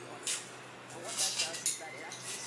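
Knife cutting a red onion held in the hand, a few short crisp cuts, one near the start and a cluster in the second half.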